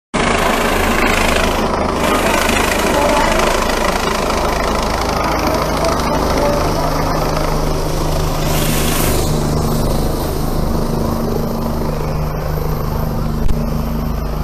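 Helicopter coming in to land, its rotor and turbine engine running loudly and steadily throughout.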